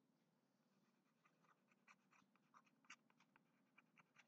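Near silence, with faint, irregular short scratches and taps of a stylus writing on a pen tablet.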